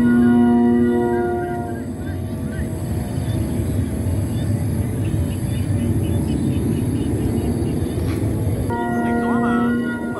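Bamboo flutes of a Vietnamese flute kite, including a D70 bell flute, sounding a warm chord of several steady tones together as the kite flies. The chord fades after about two seconds under a low rumble of wind on the microphone and returns near the end.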